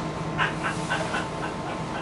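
A New Flyer Xcelsior XDE40 hybrid bus runs with a steady low drivetrain hum, heard from inside the passenger cabin. About half a second in, a quick run of about six short, high-pitched squeaks sounds over the hum.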